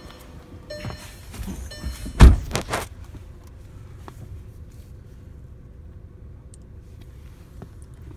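Handling knocks inside a car cabin: one loud thump about two seconds in, followed by two or three smaller knocks, over a low steady rumble.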